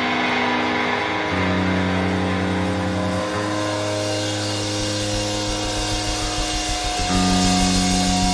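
Live rock band playing an instrumental passage without vocals: electric bass and guitars hold sustained notes, the low bass note changing about every two seconds.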